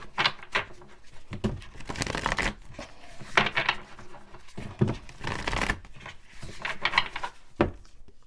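A deck of oracle cards being shuffled by hand: a string of irregular papery swishes and riffles, with one sharper snap of the cards near the end.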